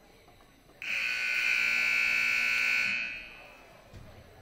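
Basketball scoreboard buzzer sounding one long, loud, high-pitched blast of about two seconds as the game clock runs out, marking the end of the fourth quarter and the game.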